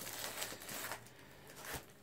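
Plastic Blu-ray cases being handled and shuffled: faint rustling with a few light clicks.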